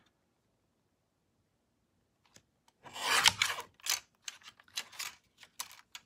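Paper trimmer's cutting blade sliding along its rail through a strip of patterned paper: one rasping stroke about three seconds in, followed by several shorter scrapes and rustles of paper.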